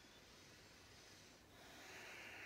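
Faint, slow breathing: one long breath, with the next one beginning about a second and a half in.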